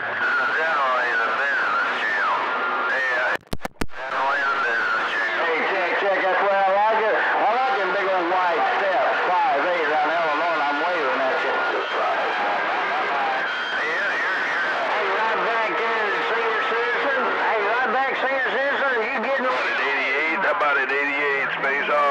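CB radio receiver picking up skip chatter on channel 28: several voices at once come through the set, garbled and talking over one another. About three and a half seconds in, the signal briefly drops out with a few sharp clicks.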